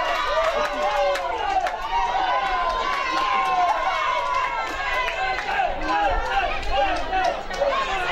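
Many voices shouting and cheering at once at a football match: a crowd celebrating a goal.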